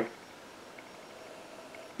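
Quiet room tone: a faint, steady hiss with no distinct sounds.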